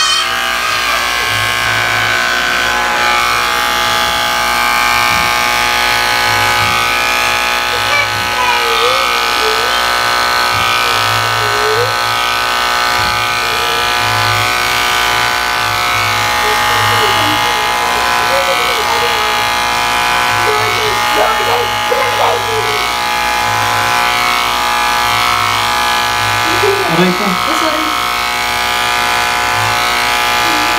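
Corded electric hair clippers running with a steady buzz as they cut a man's short hair.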